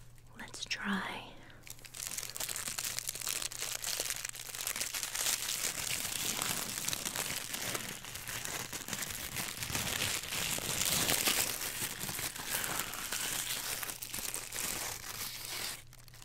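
Close, continuous crinkling and rustling of crinkly wrapping being handled and unwrapped near the microphone, from about two seconds in until it stops just before the end.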